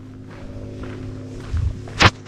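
Handling noise from a hand reaching for and grabbing the 360° camera, with a low thump near the end, over a steady low hum.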